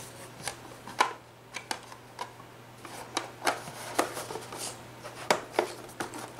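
Irregular clicks and taps with light rustling as the back panel of a small box is fitted and snapped shut over a filling of vase-filler balls.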